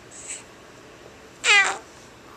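A young baby gives one short, high-pitched squeal about one and a half seconds in.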